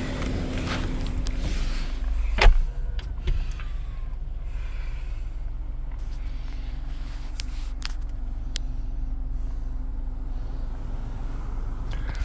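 Steady low hum inside the cabin of a 2015 BMW 750 with its engine idling. A single loud knock comes about two and a half seconds in, followed by a few faint clicks.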